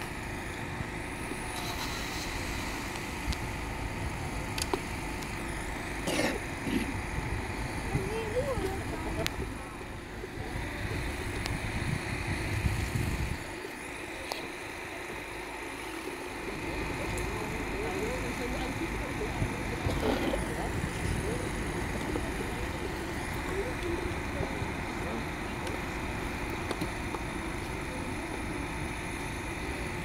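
Outdoor background noise: a steady low rumble that drops out for a couple of seconds around the middle, with faint voices now and then.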